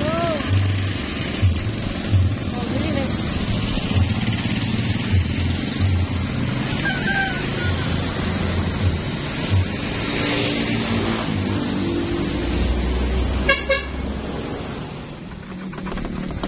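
Road noise with motorcycles passing and wind buffeting the microphone in uneven low rumbles. A short horn toot sounds about three-quarters of the way through.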